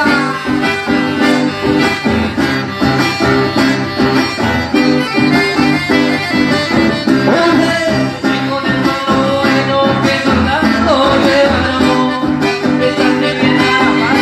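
Live button accordion and acoustic guitar playing together, with a man singing over them in places.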